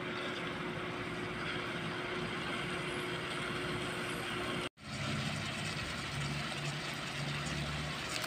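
Steady low background rumble with a faint hum, dropping out for an instant about halfway through where the recording is cut.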